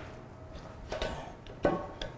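A faint knock about a second in and a sharper, louder one near the end: metal tools knocking against the steel of a robot arm being taken apart.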